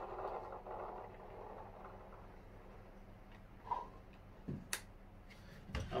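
Gel balls poured from a bottle into a LeHui SIG 552 gel blaster magazine, a soft rattling hiss that fades away over the first two seconds or so. A few light plastic clicks follow near the end as the magazine is handled.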